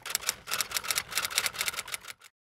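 A rapid run of sharp clicks, about eight a second, like quick typing, the sound effect laid under an animated logo as its letters are written out; it stops just after the last letter.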